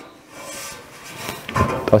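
A hand rubbing over the edge of a sheet-metal bonnet: a soft, even scraping that lasts about a second.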